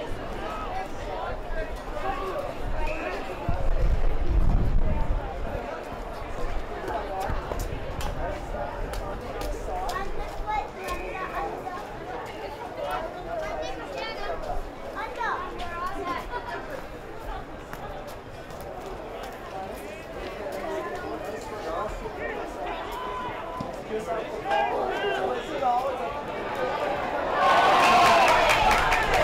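Indistinct chatter and calls from spectators and players at a football ground, with a low rumble about four seconds in and voices growing louder near the end.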